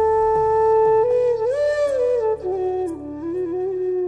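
Flute playing a melodic phrase in raga Bhoopali: a long held note, then a rising ornament and a stepwise descent to a lower held note. Underneath are a steady low drone and a few soft plucked notes.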